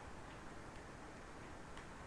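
Faint keystrokes on a computer keyboard: a few soft, irregular clicks over a steady background hiss.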